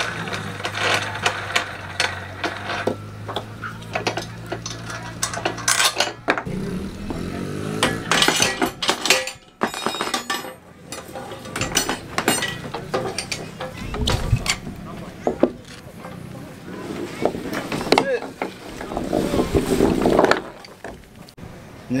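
Metal clinks and knocks from a Bolt It On steel tie-down bar as its hand knobs are unscrewed and the bar is worked loose and lifted out of its floor mounts.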